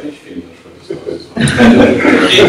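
Speech only: a pause of about a second and a half, then a voice speaking through a microphone again.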